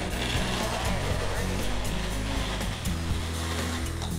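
Magic Bullet personal blender running steadily, its blades puréeing bananas into a smooth mash.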